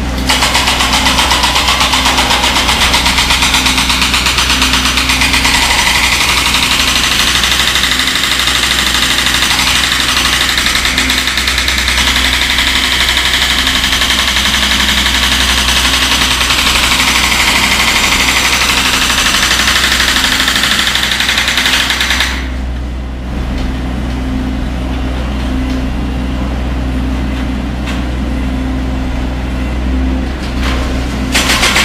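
Construction-site diesel engine running, with a loud, high rattling whine over it that cuts off suddenly about 22 seconds in, leaving the engine's low steady hum.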